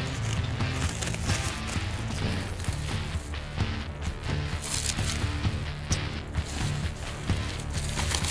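Background music with held low notes, over the rustle of plastic packing wrap being pulled off a box by hand.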